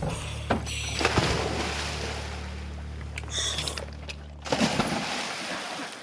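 A boat's engine running steadily, with a few knocks and rustles of gear handled on deck. The engine hum cuts off suddenly about four and a half seconds in.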